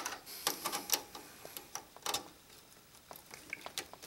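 A DVI-to-HDMI adapter being pushed onto a graphics card's DVI port: a string of irregular small clicks and scrapes, the sharpest right at the start.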